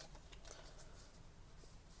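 Faint rustle and slide of paper trading cards being handled and sorted by hand, with a few light card ticks.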